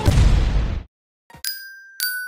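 The last low hit of a Bollywood dance track, cut off sharply a little under a second in; after a brief silence, a bright chime strikes and rings down, the first note of a logo jingle.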